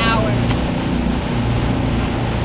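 Small motorboat's engine running steadily under way, a low hum with the rush of wind and water over it. A brief click about half a second in.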